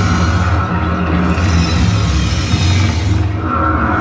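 A sustained low drone from the band's amplified electric instruments, held between songs, with a thin high tone at the start and again near the end and a swell of hiss in the middle.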